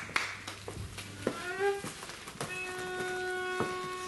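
Viola d'amore bowed: a short sliding note, then a long steady held note, the opening of a solo piece. A few last scattered claps are heard at the start.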